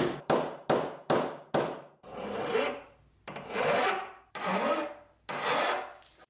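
Hand strokes rasping on the steel plunger rod of an antique grease gun: quick short strokes, about three a second, for the first two seconds, then four slower, longer strokes.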